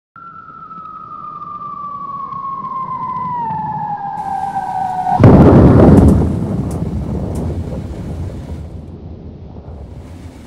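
Descending whistle of an incoming bomb, falling in pitch and growing louder for about five seconds, then a loud explosion about halfway through whose rumble fades away.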